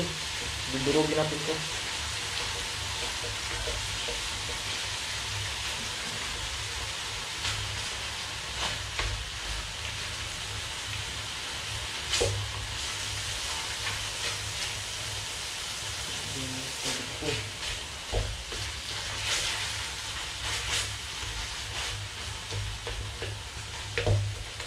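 Chopped pork sizzling steadily in a hot wok as it is stirred and scraped with a wooden spatula, with scattered sharp knocks of the spatula against the pan.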